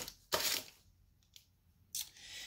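Crinkly wrappers of fun-size candy bars rustling as they are handled and set down on a cutting mat: two short rustles in the first half-second, then a few faint clicks.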